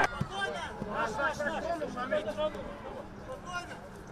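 Pitch-side sound of footballers calling out to one another during play: short shouts overlapping, with a few faint knocks.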